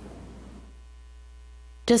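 Low, steady electrical mains hum in a quiet pause, with a voice starting near the end.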